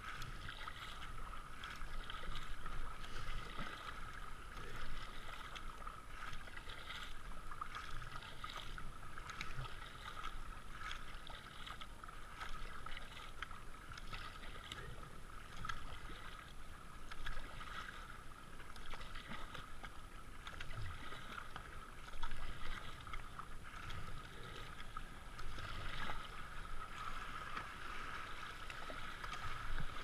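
Kayak paddle strokes splashing in a shallow flowing river, heard from a helmet-mounted camera, with a splash roughly once a second over a steady rush of water.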